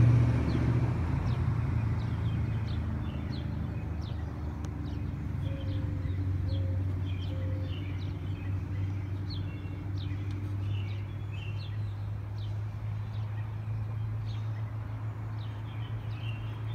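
A steady low hum, a little louder for the first second or two, with small birds chirping in short, repeated calls over it.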